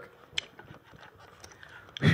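Quiet room tone in a small club, with a single faint click about half a second in.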